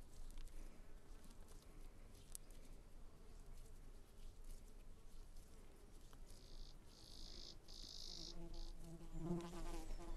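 An insect buzzing close by: a high-pitched buzz in three short bursts over about two seconds in the second half, then a lower buzz near the end. Under it, faint soft rustling of moist soil being worked into a ball between the hands.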